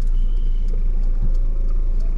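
Steady low rumble of a car's engine and running gear, heard from inside the cabin.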